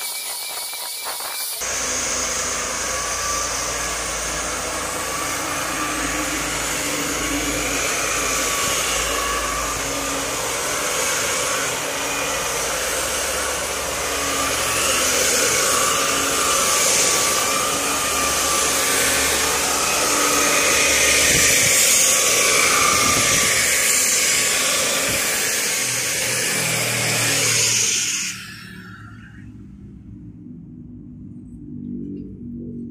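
Electric hand planer running over a kamper-wood door panel, its motor whine wavering up and down as the blade bites, then stopping near the end.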